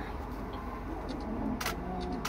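An Asian elephant moving in a pool, with a short splash of water about three-quarters of the way in, over a steady low outdoor hum and faint distant voices.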